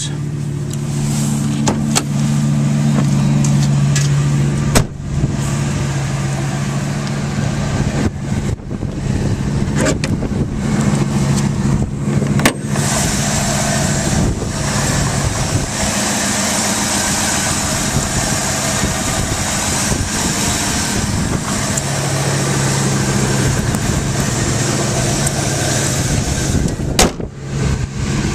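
1999 Ford F-350's Triton 6.8-litre V10 idling steadily, a low even hum. It is heard first from the cab, then close to the open engine bay, where a strong hiss rises over the hum from about halfway through until near the end.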